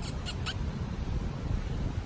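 Low wind rumble on the microphone while walking, with three short high squeaks in the first half-second.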